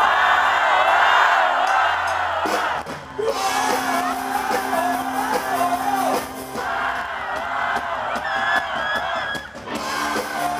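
Live rock band playing, with an electric guitar, drums and a male singer. The crowd cheers and whoops over the music for the first couple of seconds, then the singing carries the melody.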